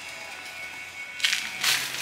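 Rubber-gloved hands handling a wet dress in a bucket of dye water: two short wet rustling swishes in the second half, under faint background music.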